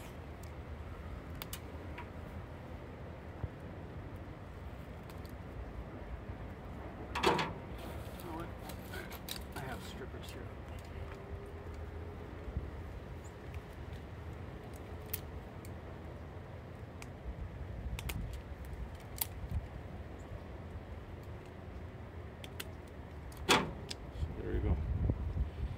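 Scattered small clicks and rustles of a power cable and an orange-handled wire stripper being handled, over a steady low background rumble, with one sharper click about seven seconds in and another near the end.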